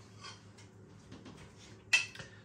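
Quiet handling of a plate and cutlery with faint small clicks, then one sharp clink of a metal fork against a ceramic plate near the end.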